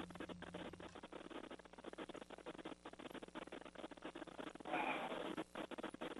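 Faint, dense, irregular crackling and clicking, like static on a radio or intercom link, with a crew member's brief "wow" near the end.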